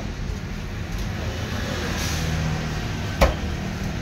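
One sharp knife chop through fish into a wooden log chopping block a little after three seconds in, over a steady low rumble of traffic.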